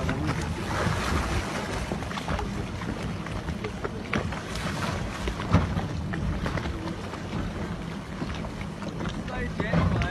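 Wind buffeting the microphone over the steady low hum of a boat's engine, with water splashing against the hull and a few scattered knocks.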